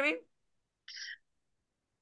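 A woman's voice ends a short phrase just after the start. Then the call audio drops to dead silence, broken about a second in by one brief, faint, breathy sound.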